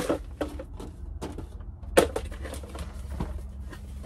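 Cardboard boxes and small items being handled and shuffled, rustling and clattering, with a sharp knock at the start and another about two seconds in, over a steady low hum.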